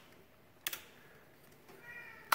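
A toggle switch clicks once, about two-thirds of a second in, switching on the front LED light bar.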